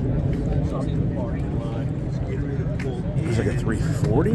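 Indistinct voices of people talking over a steady low rumble.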